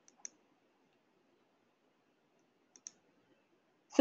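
Computer mouse clicking: a quick double click near the start and another about two and a half seconds later, over faint room hiss.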